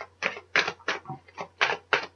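A deck of tarot cards being shuffled by hand: short papery slaps and rustles, about three or four a second.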